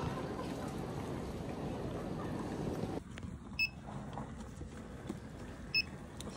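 Steady wash of background noise in a large airport terminal hall. About halfway through it cuts to a quieter shop, where a checkout gives two short, high electronic beeps about two seconds apart.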